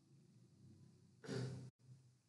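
A man's short breathy sigh into a close microphone, a little past the middle, cut off abruptly, with faint room tone around it.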